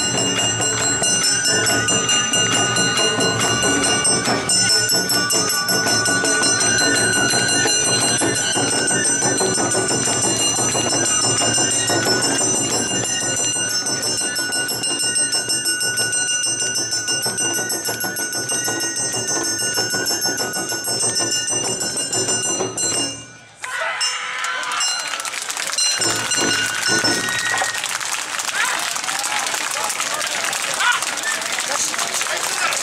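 Awa odori band music with steady bell-like ringing, played loud for a street dance. It stops abruptly about 23 seconds in and gives way to applause and crowd voices.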